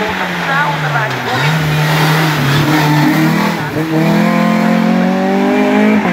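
Renault Clio race car engine at full load on a hill climb: the revs fall over the first second or so as it slows for a bend, hold low, break off briefly past the middle, then climb steadily as it accelerates away.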